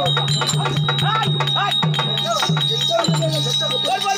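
Therukoothu accompaniment: a steady harmonium drone under drum strokes and jingling bells, with short rising-and-falling vocal cries over it.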